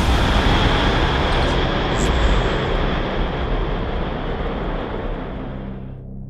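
A loud, rumbling sound-design roar with a heavy low end that fades steadily, its higher part dropping away near the end.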